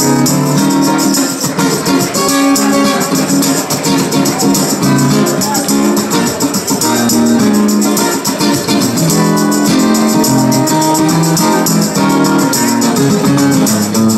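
Live acoustic guitar playing chords and notes with hand percussion shaken in a steady rhythm over it.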